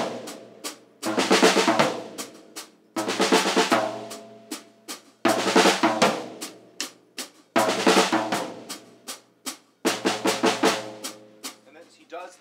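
Drum kit played solo: a cymbal crash together with the bass drum about every two seconds, five times, each left to ring and fade, with quicker lighter strokes on the drums in between.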